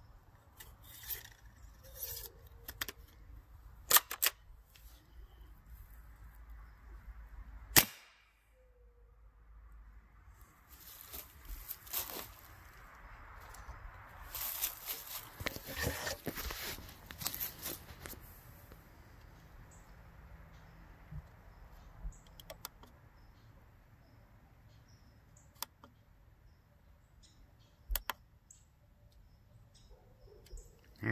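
Two sharp shots about four seconds apart from an Umarex AirJavelin air-powered arrow gun running on high-pressure air regulated to about 1050 psi, with a few small clicks before them. Several seconds of rustling and handling noise follow in the middle.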